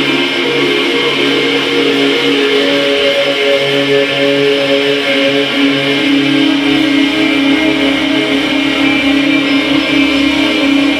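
A live band playing an instrumental passage led by electric guitars holding sustained, ringing notes. A deep bass part comes in about six and a half seconds in.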